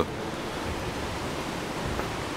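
Steady rushing ambient noise of an enclosed parking garage, with a soft low bump near the end.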